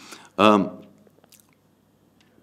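A man's voice: one short word about half a second in, trailing off. This is followed by a pause with a few faint mouth clicks close to the microphone.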